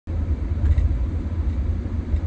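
Steady low rumble of road and engine noise inside a car's cabin while driving.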